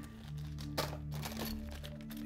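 Clear plastic kit parts bags, holding small metal parts, crinkling and rustling as they are lifted and handled, with a sharper crackle a little under a second in. Soft background music with sustained notes plays underneath.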